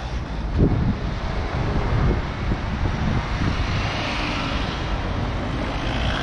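Road traffic passing close by: car engines and tyres on the road make a steady rumble, with a louder hiss in the second half as vehicles go past.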